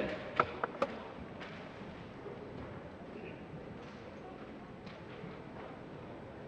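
Quiet indoor sports-hall ambience between badminton rallies: a steady low background hum and murmur, with three or four short sharp knocks or taps in the first second.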